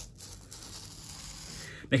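Rotary cutter with an old, paper-dedicated blade rolling along a pattern sheet, a soft steady hiss of the blade cutting through. A man's voice starts right at the end.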